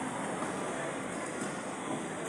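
Steady background noise of a town street with distant traffic, even and without distinct events.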